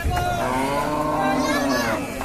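A cow moos once: one long, low call of over a second that swells slightly in pitch and falls away near the end.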